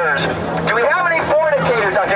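A man's voice amplified through a handheld microphone and portable loudspeaker, with a steady low hum underneath.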